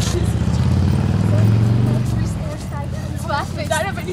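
A motor vehicle's engine passing close by, swelling to its loudest about a second and a half in and then easing off, while people's voices talk and call out over it.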